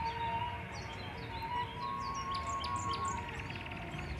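Birds chirping, with a short rapid trill about three seconds in, over faint steady background music.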